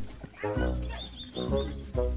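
Soundtrack cue of low, drawn-out pitched notes, one about every second, starting about half a second in.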